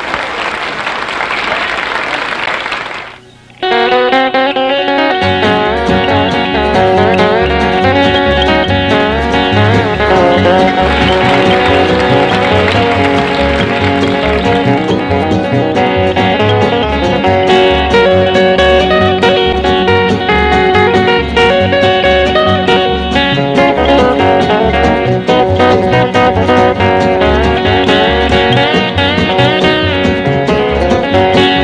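Applause that stops about three seconds in, then a five-string banjo playing an instrumental of quick picked notes, with a steady bass pulse joining about a second and a half later.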